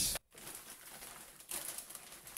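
Thin clear plastic bag rustling and crinkling as it is handled, with a slightly louder rustle about a second and a half in.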